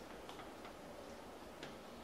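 Faint, irregular clicks over quiet room tone, about three in the space of two seconds.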